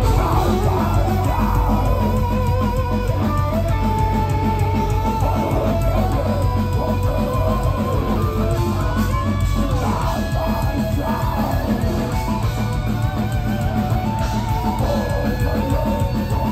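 Melodic death metal band playing live: distorted electric guitars carry a wavering melodic lead line over a fast, steady pulse of bass and drums.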